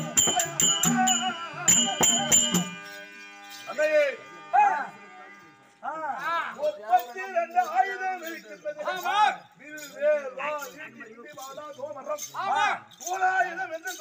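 Stage folk-drama music: jingling metal percussion struck in a fast, even beat over harmonium, stopping abruptly about two and a half seconds in. A performer's loud voice then takes over in long phrases that rise and fall, with the harmonium holding steady notes beneath for a few seconds, and a short shout of "Oh!" near the end.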